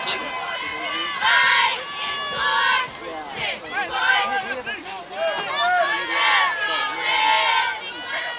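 Football game crowd of spectators and sideline players, many voices calling out at once, with a few louder shouts standing out.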